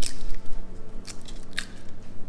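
Eggshells cracking and being pulled apart by gloved hands over a glass mixing bowl: a few sharp cracks, with the last near the end.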